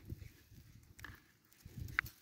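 Faint handling noise of drip tape being pushed onto a plastic connector set in a PVC main line: low, uneven rubbing and knocking with a light click about a second in and another near the end.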